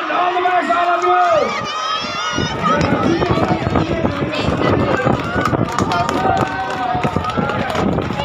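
A crowd of voices shouts and cheers as the race starts. From about two seconds in come quick, irregular thuds of running footsteps and the jostle of a camera carried at a run, with scattered shouts over them.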